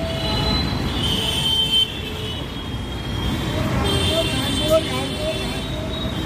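Street traffic noise: a steady rumble of engines and tyres, with high horn tones about a second in and again around four seconds in, and people's voices in the background.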